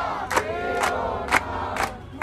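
A group chanting slogans together, clapping in time at about two claps a second.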